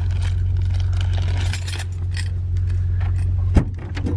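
Keys jangling with small clicks and rattles over the steady low hum of the running car, then a single sharp clunk about three and a half seconds in as the tailgate latch releases and the tailgate opens.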